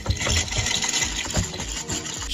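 Crackling, rushing cracking-glass sound effect played by a glass bridge's fake-crack floor screen, running without a break.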